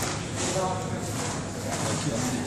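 Indistinct voices over the steady background noise of an indoor shopping arcade.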